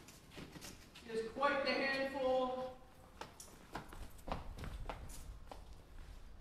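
Footsteps on a hard floor, sharp irregular steps about three a second in the second half, after a short stretch of speech.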